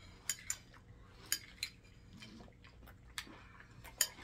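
Metal spoons clinking against cereal bowls as two people eat: about six short, light clinks at irregular intervals.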